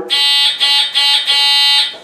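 Electric horn of a Rascal 235 mobility scooter sounding three blasts in quick succession, a steady high tone with short breaks between.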